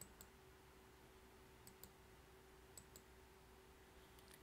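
Near silence: faint room tone with a steady hum, broken by a few faint computer mouse clicks near the start and about two and three seconds in.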